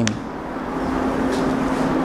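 A steady rushing noise with a faint low hum, slowly growing louder.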